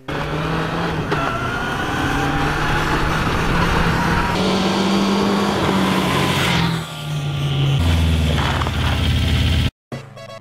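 Yamaha FZR600 sportbike's inline-four engine revving as the bike rides along a dirt road toward and past the camera, the pitch climbing over the first few seconds, then falling and settling lower as it goes by. The sound cuts off suddenly near the end.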